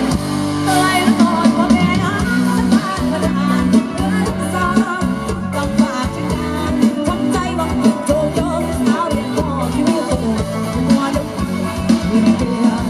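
Live band music with a woman singing into a microphone, backed by drums and band instruments.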